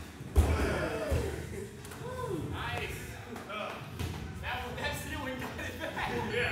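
A heavy thud as a person jumps down from another's shoulders and lands on the floor, followed by a second, lighter thump about a second in.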